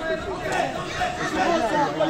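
Several voices talking and calling out over one another: spectator chatter around a fight ring.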